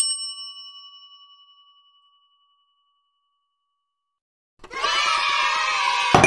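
A single bell-like ding rings out and fades away over about two seconds, then there is silence. About a second and a half before the end, a sustained sound with several pitched tones begins.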